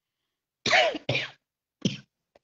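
A woman coughing: three short coughs in quick succession, beginning a little over half a second in, the first the loudest.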